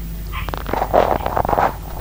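Interior noise of a moving diesel train: a steady low hum under a burst of rumbling and rapid clattering from the wheels running over the track, starting about half a second in and loudest around the middle.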